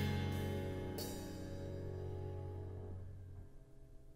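The last chord of a jazz quartet of piano, double bass, drums and saxophone ringing out and fading away. It dies out about three and a half seconds in.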